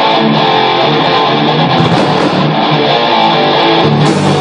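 Rock band playing, with an electric guitar to the fore.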